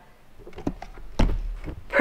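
Handling noise from a hand-held camera being picked up and turned around: light clicks and rustles, with a dull thump a little after a second in.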